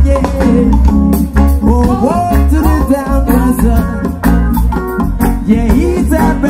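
Live reggae band playing with a lead singer over heavy bass, a steady drum beat, guitar and keyboards.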